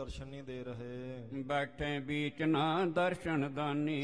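A man's voice chanting verses in a sustained, melodic recitation, with long held and gliding notes.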